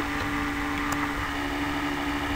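Steady background hiss with a low, even hum running under it: the recording's own room tone, with no speech.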